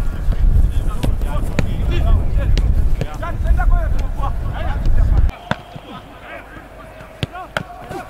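Wind buffeting the microphone, with footballs being kicked and players calling out. The wind noise cuts off suddenly about five seconds in, leaving a few sharp thuds of balls being struck and caught.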